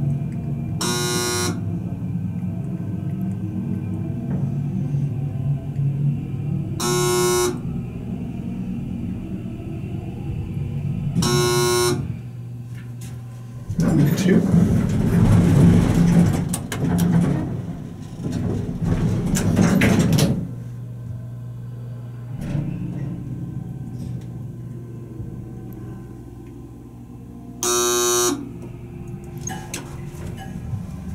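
Elevator car's electronic beeps, short single tones about a second in, at about 7 and 11 seconds, and once more near the end, over a steady low hum of the running hydraulic elevator. A stretch of louder, noisy sound fills the middle.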